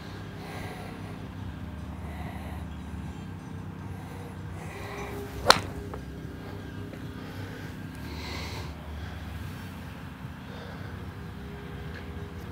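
A 7-iron striking a golf ball off a range hitting mat: one sharp crack about five and a half seconds in, over a steady low background rumble.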